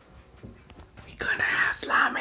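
A breathy whisper close to the microphone, starting about a second in and lasting about a second, after a quiet stretch with a few faint ticks.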